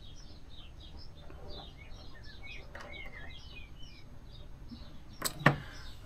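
Faint chirping of small birds in the background, many short high chirps in quick succession. Two sharp clicks come about five seconds in.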